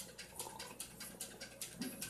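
Faint, fast, even ticking, about five ticks a second, stopping just before the end.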